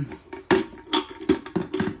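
A copper kettle being handled and turned over in the hand: about five short knocks and clinks of the metal body as it is moved.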